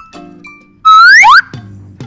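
Quiet background music, then, a little less than a second in, a loud rising whistle sound effect: a quick upward glide lasting about half a second, a transition sting between slides.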